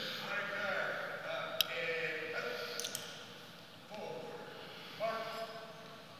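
Faint voices and murmur in a gymnasium, with short bursts of talk about four and five seconds in, and two sharp clicks about one and a half and three seconds in.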